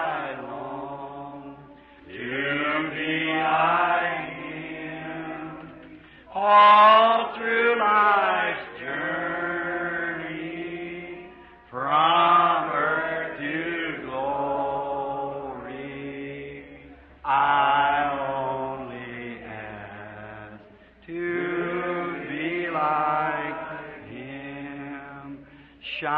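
A congregation singing a slow hymn in long held phrases of about five seconds each, with short breaks between them. The recording is old and narrow-band, so it sounds muffled, with no high end.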